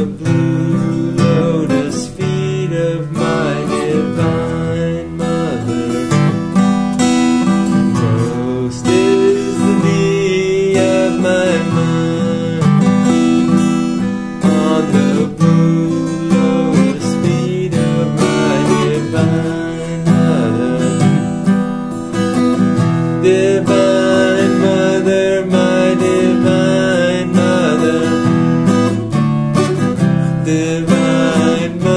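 Acoustic guitar strummed steadily through a slow E minor, C and D chord progression, with a man's voice singing a devotional chant over it.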